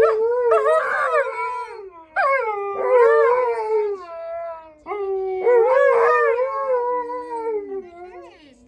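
Two Alaskan Malamutes howling together in three long, wavering calls, each sliding down in pitch at its end.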